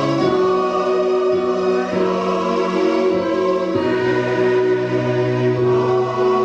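Slow hymn sung by a choir, a chord of voices held for about two seconds at a time before moving to the next.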